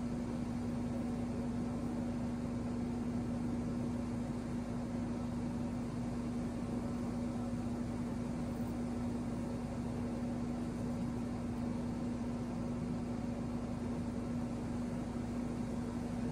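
A steady mechanical hum with one constant low pitch over a soft, even hiss, unchanging throughout.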